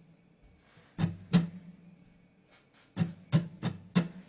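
Acoustic guitar strummed in short sparse groups: two strums about a second in, then four quick strums near the end, with near-silent gaps between them. The gaps are rests made by swinging the strumming hand past the strings without touching them, the 'ocean strumming' way of varying energy without a fixed pattern.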